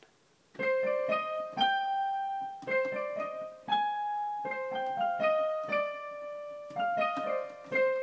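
Digital piano playing a slow single-note melody, layered through a GS synth with a second piano voice transposed two octaves, so each note sounds in two registers at once. The notes begin about half a second in and ring on, roughly two notes a second.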